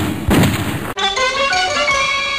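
A gunshot sound effect with a short, ringing tail just after the start, then a held music sting begins about a second in.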